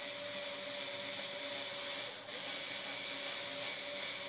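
Small cordless electric screwdriver running steadily with an even whine as it drives a corner screw that fastens a security camera to its back box. The sound dips briefly about halfway through.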